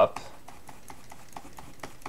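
Light, irregular clicks and taps of a stylus and computer controls at a digital drawing desk, a few a second, as the Soft Eraser is worked over the drawn lines.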